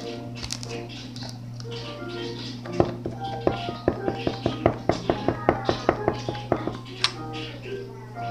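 Slime squeezed and worked in the hands, giving a quick run of sharp clicks and pops, about five a second, from about three seconds in until near seven seconds. Background music and a steady low hum run under it.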